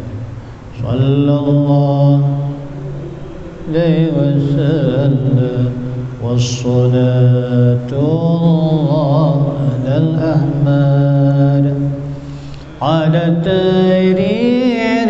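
A man's solo voice chanting a salawat into a microphone in maqam Rakbi: long melismatic phrases with wavering held notes, broken by short breaths about a second in, near four seconds, and shortly before the end.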